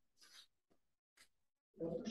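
Near silence of a small room, broken by two faint brief sounds, then a man's voice near the end.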